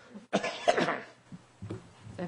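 A person coughing: one short, abrupt cough burst about a third of a second in, followed by faint small room sounds.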